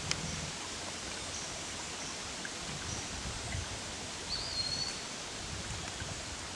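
Woodland ambience: a steady outdoor hush with faint short high chirps, and one short bird whistle that rises then holds, a little past four seconds in. Low rumbles from the camera being moved run under it.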